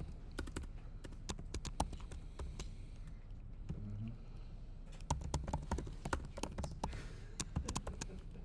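Typing on a computer keyboard: a run of quick key clicks, thinning out in the middle and picking up again in a faster flurry for the last three seconds.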